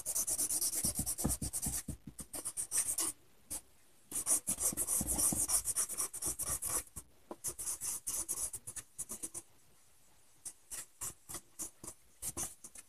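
A pen scribbling quickly back and forth on paper to colour in a shape, in runs of rapid scratchy strokes. A short break comes about three and a half seconds in, and the strokes turn lighter from about seven seconds, pause briefly near ten seconds, then start again lightly.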